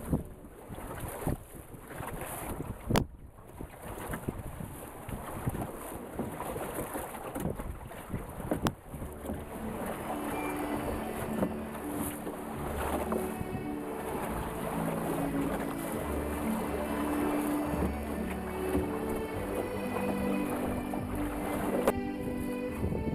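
Wind on the microphone and water rushing past the hull of a small wooden sailing dinghy under way, with background music whose notes stand out more in the second half. There are two sharp clicks, about three and nine seconds in.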